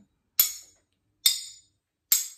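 A metal fork and spoon struck together to keep a steady beat: two bright clinks a little under a second apart, each ringing briefly.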